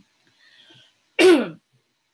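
A woman clearing her throat once, a short rasp whose pitch falls, in the second half.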